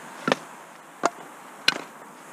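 Pieces of scrap wood knocking as they are laid onto a layer of stones and onto each other: three short, sharp knocks about two-thirds of a second apart.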